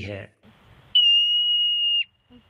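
A single high, steady whistle about a second long, starting with a brief drop in pitch and then holding level: the whistled alarm call of a Himalayan marmot.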